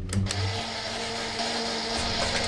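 A low thump, then an electric appliance motor whirring steadily with a hum tone through it, like kitchen appliances switching on all at once.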